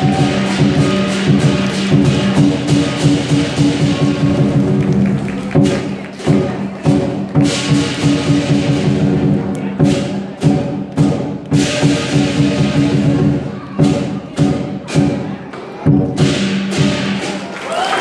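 Live lion dance percussion: a large lion drum beaten in fast, dense strokes over ringing metal percussion, with cymbal crashes swelling twice near the middle.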